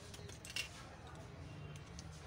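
Faint handling noise of a Xiaomi Redmi 6A's logic board and frame under the fingers: a few light clicks and a short scrape about half a second in, over a low steady hum.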